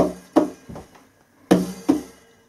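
Hands striking a wooden cajon in a repeating pattern: five sharp hits, three close together, a short gap, then two more, each with a brief low ring.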